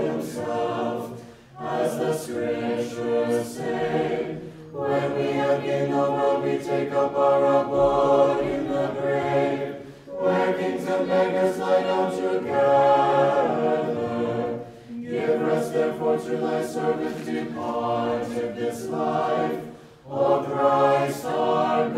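Choir singing Orthodox liturgical chant a cappella, several voices together in sustained phrases of a few seconds with short breaks between them.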